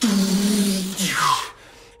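A man imitating a drum fill with his mouth, lips pursed: a buzzing, hissy held note about a second long that ends in a falling swoosh.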